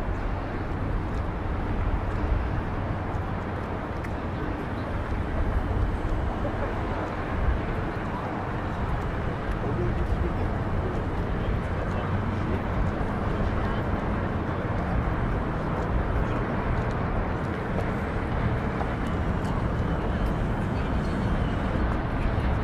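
Outdoor ambience of a busy pedestrian harbour promenade: a steady low rumble with the voices of passers-by talking.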